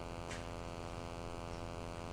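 Steady electrical mains hum with a buzzy edge and an even pitch, and a faint tick about a third of a second in.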